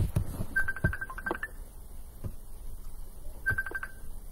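Two quick runs of short, high electronic beeps at one pitch, the first about a second in and the second near the end, with a few faint knocks between them.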